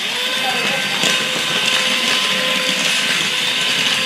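Remote-control toy centipede crawling on a hardwood floor: its small electric motor and gears whirring steadily as the plastic legs work. The whir starts suddenly and holds at an even level.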